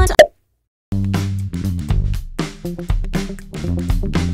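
A sung clip cuts off with a short loud pop, then after about half a second of silence an instrumental backing track starts, with a steady bass line, guitar and regular drum hits.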